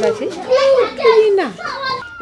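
Speech: a woman talking, with a short laugh at the very end.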